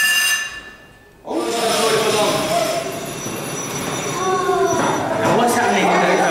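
Metal tube pressed against dry ice, squealing with a high ringing note rich in overtones that fades out within about a second: the metal vibrates as the subliming carbon dioxide gas pushes it off the ice. Children's chatter follows.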